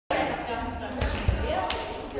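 Indistinct voices echoing in a large sports hall, with a couple of dull thuds about a second in and a short click shortly after.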